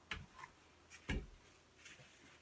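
A few light, separate knocks and taps from handling a plastic spray bottle and newspaper, the loudest and deepest about a second in.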